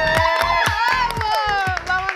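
A small group of people screaming and cheering excitedly, several high voices at once, over music with a steady beat of about four thumps a second.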